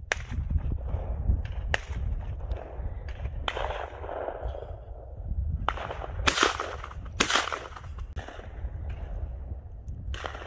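Shotgun fired at clay targets: two loud shots about a second apart, with several fainter, more distant shots earlier, over a low rumble of wind on the microphone.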